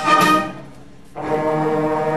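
Brass band music with sustained brass notes. The playing breaks off about half a second in and resumes with a new phrase just after a second in.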